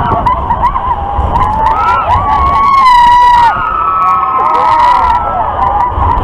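Several riders screaming and yelling together on a spinning thrill ride in motion, with one long high scream about two and a half seconds in, over a low rumble.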